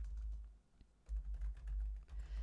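A few keystrokes on a computer keyboard, faint, over a steady low hum.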